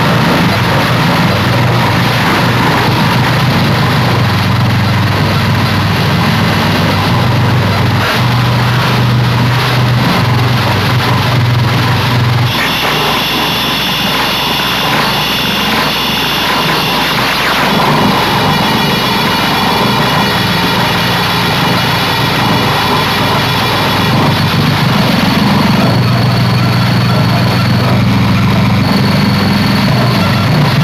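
Electro-acoustic improvised music: a loud, dense noise texture over a low droning hum. About twelve seconds in the low drone drops out and a cluster of steady high whistling tones comes in. The low drone returns near the end.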